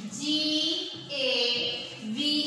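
Young children's voices chanting words aloud in a drawn-out sing-song, two long held syllables one after the other.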